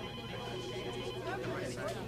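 A telephone ringing: a steady high-pitched ring lasting about a second, then stopping, over faint background voices.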